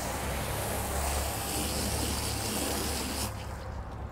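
Water from a garden hose splashing steadily as it rinses a golf cart's rubber floor, with the runoff pouring onto concrete. It cuts off sharply a little after three seconds in.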